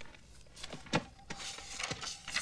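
Paper rustling and crackling as a folded map page in a bound book is opened out, with a few soft thumps about a second apart.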